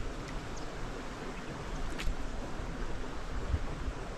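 A steady, even rush of outdoor wind and water noise, with a faint click about two seconds in and a soft low thump near the end.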